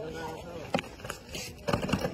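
Lion dancers' feet stepping and scuffing on a concrete ground, a few scattered knocks, under low voices.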